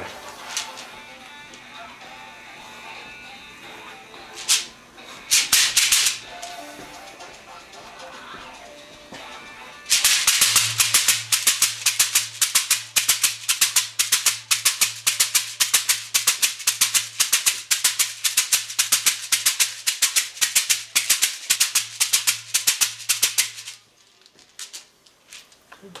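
A shekere, a gourd shaker wrapped in a net of beads, shaken briefly a few times, then played in a fast, steady rattling rhythm from about ten seconds in that stops abruptly near the end.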